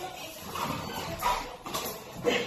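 A large dog making a few short vocal sounds while play-wrestling with a man on the floor, with scuffling knocks in between.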